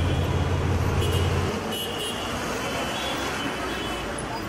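A car engine running with a low steady hum that cuts off about a second and a half in, leaving road traffic noise with a few short high chirps.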